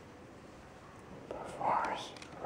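A person whispering, starting about a second and a half in, after faint hiss.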